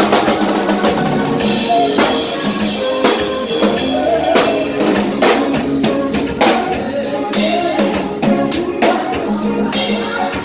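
Live band playing a worship song: a drum kit with frequent snare and cymbal hits over keyboard chords and electric bass.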